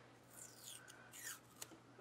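Faint rasping of washi tape being pulled off its roll and torn: two short, high, falling rasps, then a small tick near the end.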